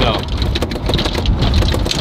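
Golf cart riding along: a steady low rumble of the cart and its tyres with a dense run of rattling, crackling clicks.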